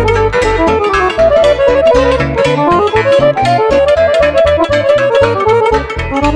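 Romanian lăutărească folk music played live on cimbalom, with fast hammered runs of notes over accordion and keyboard accompaniment. The bass keeps a steady pulsing beat.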